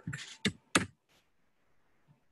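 A few computer keyboard key clicks: two sharp ones within the first second, then a faint third.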